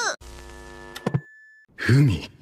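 A steady buzzing tone with even overtones for about a second, ending in a few sharp clicks, then a short hush and a brief spoken word near the end.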